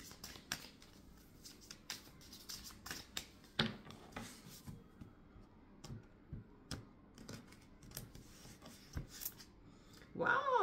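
A deck of tarot cards being shuffled and handled: quiet, irregular clicks and slides of card against card, with one sharper click about three and a half seconds in.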